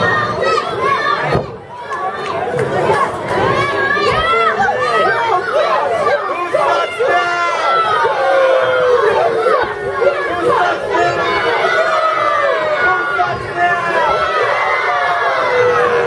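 Wrestling crowd of many children and adults shouting and cheering at once, with many high voices overlapping. There is a brief lull about a second and a half in.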